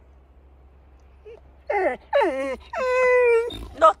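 Yellow Labrador retriever whining and moaning in three drawn-out calls starting about a second and a half in, the middle one falling in pitch and the last held steady, as if answering when spoken to.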